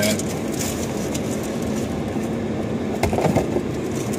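Trading-card foil wrapper crinkling and cards being shuffled by hand, with a few faint crackles, over a steady low hum inside a car.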